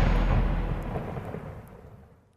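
Rumbling tail of a deep boom from a logo intro sound effect, dying away over about two seconds.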